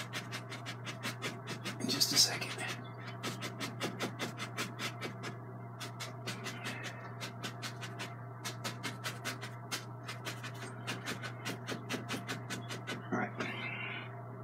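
A stiff two-inch brush tapped again and again against an oil-painted canvas, about five light taps a second, over a steady low hum.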